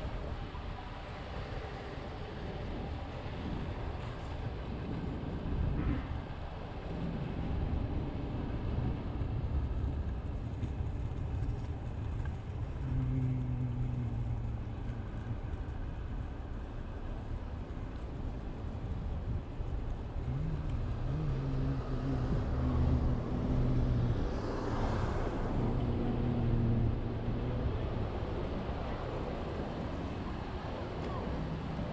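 Xootr kick scooter's small wheels rolling over city asphalt: a steady low rumble, with wind on the microphone. The hum of car engines in the surrounding traffic rises twice, about halfway through and again in the last third.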